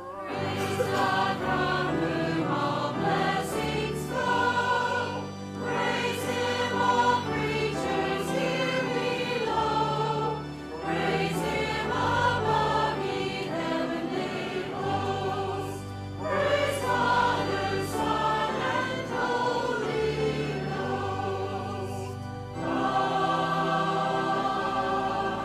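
Church choir singing a hymn in parts over a sustained low instrumental accompaniment, in phrases broken by short pauses every five seconds or so.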